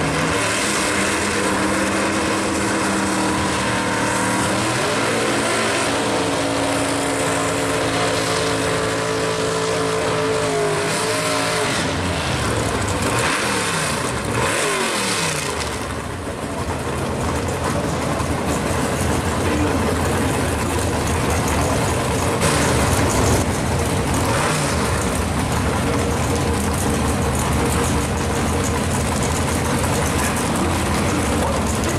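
1967 Chevy II Nova drag car's engine running loud, holding a steady pitch at first and then revving up and down. After a short dip about halfway, it is held at high revs through a burnout with tyres spinning, then runs rough and loud as the car moves up to the line.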